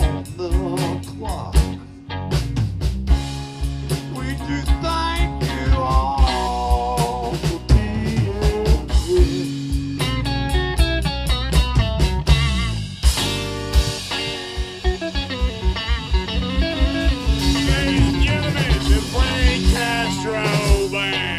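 A live blues band plays: an electric guitar lead with bent, wavering notes over bass guitar and a drum kit keeping a steady beat.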